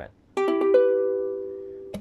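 A Mahalo ukulele strummed on an E minor chord. It sounds once about a third of a second in and rings on, fading slowly.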